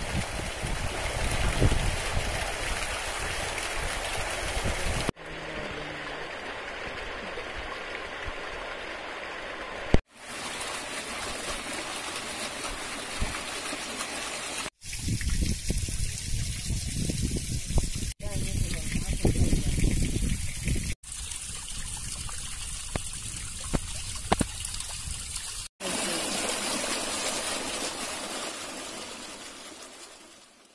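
Water jetting and spraying through gaps in a dam's closed iron sluice gate, a steady rushing noise, forced out by a reservoir nearly full to overflowing after rain. The sound breaks off abruptly for an instant several times.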